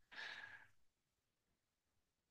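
A man's short breath of about half a second, heard between sentences of talk, followed by near silence.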